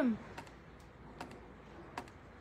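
A few sharp, sparse computer clicks, under a second apart, each generating a new number on a random number generator for a practice run before the draw.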